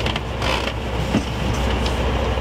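Creaking and small knocks over a steady low rumble inside a tour bus.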